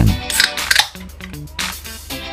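An aluminium soda can's ring-pull snapped open with a click and short fizz, over background music.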